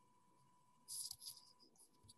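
Near silence on a video call, with a brief faint scratchy rustle about a second in and a few faint ticks after it.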